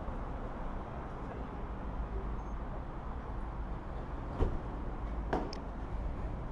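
Steady low background rumble of a fuel station forecourt, with two short clicks about four and a half and five and a half seconds in.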